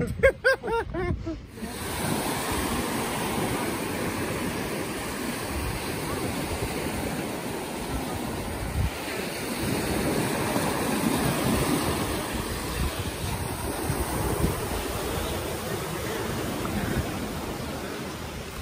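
Small surf breaking and washing up on a sandy beach, with wind on the microphone. The wash of the waves swells louder about halfway through.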